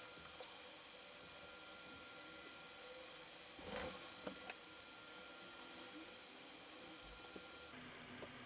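Near silence: faint room tone with a thin steady electronic whine, broken by one soft brief rustle a little under four seconds in and a couple of faint ticks.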